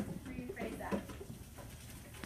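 Brief, faint children's voices answering in about the first second, then low room noise.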